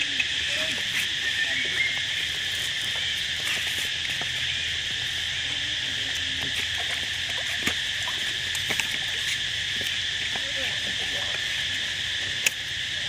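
Steady, high-pitched drone of an insect chorus, with a few brief clicks and soft splashes from macaques wading and swimming in shallow water.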